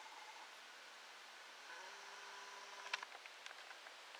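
Mostly hiss. From a little under two seconds in, a camcorder's zoom motor gives a faint, thin, steady whine. It stops with a click about three seconds in, and a few light handling ticks follow.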